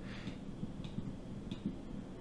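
A few faint, irregular clicks from a computer mouse being worked, over low room noise.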